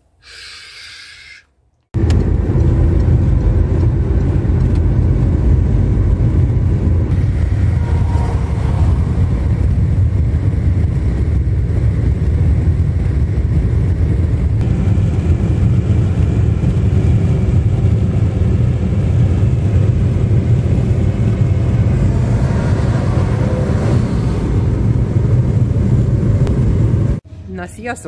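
Steady, loud low rumble of a car driving at speed on a motorway, heard from inside the car. It starts abruptly about two seconds in and cuts off abruptly near the end.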